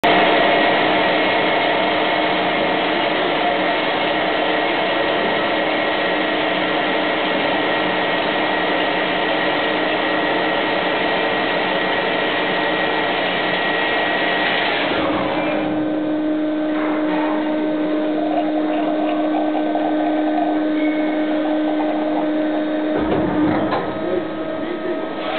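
IMET X TECH band saw cutting through a solid plastic block: a loud, steady cutting noise with a whine. About fifteen seconds in it changes to a quieter, steadier hum with one held tone.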